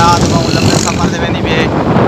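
Wind buffeting the microphone over the running and road noise of a vehicle driving along a street.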